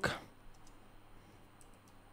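Computer keyboard being typed on: a handful of faint, separate keystrokes spread over about two seconds as a short phrase is entered.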